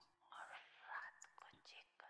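Faint whispered speech: a few short breathy syllables with no voiced pitch, at very low level.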